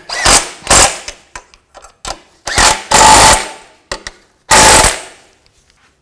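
Impact wrench tightening the exhaust flange nuts in four short hammering bursts, the longest about a second, with pauses between.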